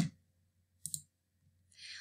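Two short clicks about a second apart, the first louder, in an otherwise quiet room; a soft breath comes just before speech resumes near the end.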